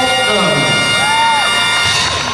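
Arena crowd cheering and shouting over music, with a held chord that cuts off suddenly at the end.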